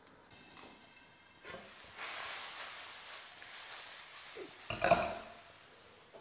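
Chicken and prawn stir fry sizzling in a hot wok, a steady hiss that builds up about two seconds in. There is a sharper clatter about five seconds in.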